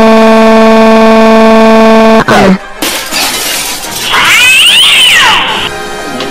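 A loud, steady held tone for about two seconds as the cartoon bunny is startled. After a short gap comes a screeching, cat-like yowl sound effect of several overlapping calls that rise and fall, then faint background music.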